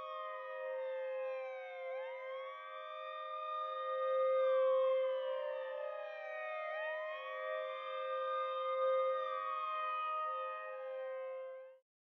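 A siren wailing, rising quickly, holding, then sliding slowly down, over and over about every five seconds above a steady hum. It cuts off just before the end.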